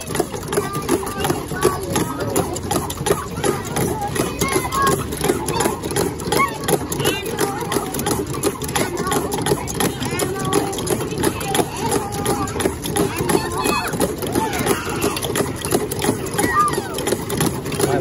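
Busy background chatter of many voices, children and adults talking at once, over a steady low hum.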